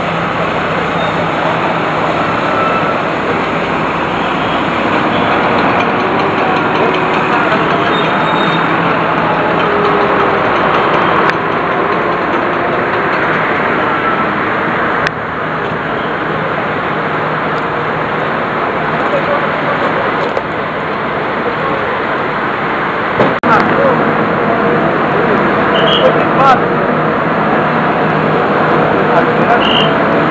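Diesel engine of a backhoe loader running steadily amid people's voices, with road traffic later on. The sound shifts abruptly a few times, and a sharp knock comes about two-thirds of the way through.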